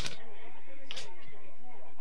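Indistinct voices talking at a steady level, with two short sharp hisses, one at the start and one about a second in.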